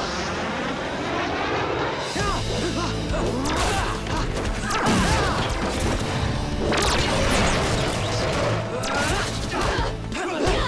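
Action-scene soundtrack: driving music under a string of punch, whack and crash sound effects. The largest crash comes about seven seconds in, as a body smashes through a wooden table and crates.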